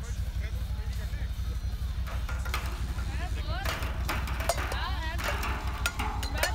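Thrown balls knocking tin cans: a few sharp knocks and clatter about midway, over a steady low rumble and distant voices.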